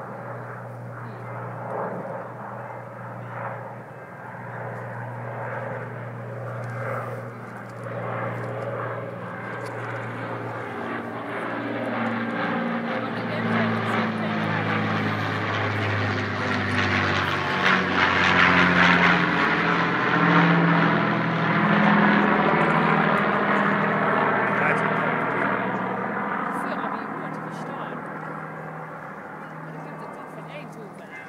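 Avro Lancaster bomber's four Rolls-Royce Merlin piston engines droning as it flies over. The sound grows louder to a peak a little past halfway, the engine note drops in pitch as the plane passes overhead, and then it fades away.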